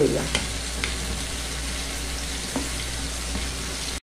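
Silicone spatula stirring mashed cassava in an aluminium pot over the heat, working margarine in until it melts, over a steady hiss, with a few light knocks of the spatula against the pot.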